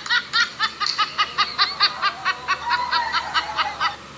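A person laughing in a rapid, high-pitched run of short 'ha' syllables, about five a second, that cuts off suddenly near the end.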